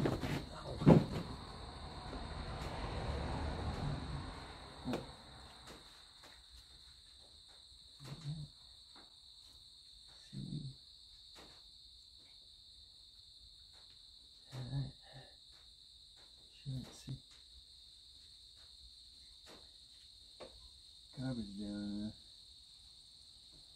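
Steady high-pitched chirring of crickets runs throughout. Over it come a rush of noise in the first few seconds, scattered light clicks from hand work on a UTV's engine, and several short, low grunts.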